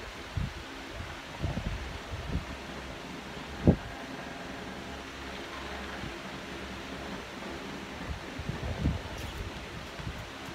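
A steady low machine hum, with a few soft low knocks and one sharp thump a little over a third of the way in.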